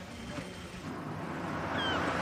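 City street traffic: a steady hiss of passing cars that swells slowly, with a short high falling squeak near the end.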